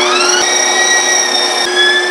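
Electric meat grinder starting up, its motor whine rising as it comes up to speed, then running steadily. Its pitch dips a little near the end as it takes the load of pork being ground.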